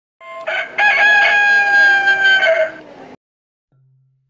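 A rooster crowing once: a couple of short notes, then one long held note that sags slightly in pitch and cuts off abruptly.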